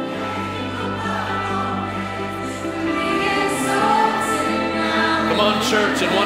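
Live worship music: held keyboard chords with a group of voices singing, growing louder about three seconds in.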